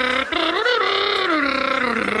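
A man imitating a jazz trumpet with his voice into a microphone: long held notes that bend up and down in pitch, with a brief break about a quarter second in.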